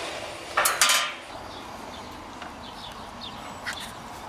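A short metallic clatter with a high ring about half a second in, like a steel screwdriver being set down, followed by a few faint knocks of handling.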